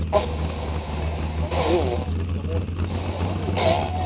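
Voices talking over a steady low hum, with no beat: a spoken passage between songs in a music mix.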